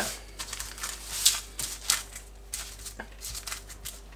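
Hands stretching and pressing pizza dough into a round on a paper sheet on a counter: intermittent soft rustling and crinkling of the paper, with a light tap about three seconds in.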